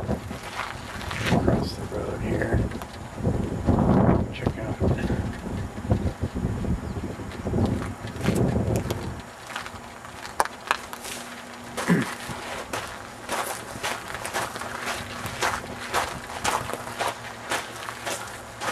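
Handheld walking outdoors: low rumbling gusts on the microphone for about the first half, then a run of light footsteps and handling clicks over a faint steady hum.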